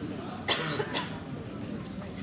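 Two short coughs about half a second apart, the first the louder, over low background chatter in a hall.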